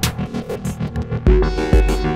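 Electronic track played on hardware synthesizers and drum machines, including a Roland TR-808 and a Korg MS-20 mini. A quick ticking rhythm runs under synth tones, and deep bass kicks with long tails come in about two thirds of the way through, along with held chords.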